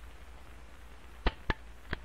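Revolver hammer being thumb-cocked: three short metallic clicks, two in quick succession just past a second in and one more near the end, over a low hum.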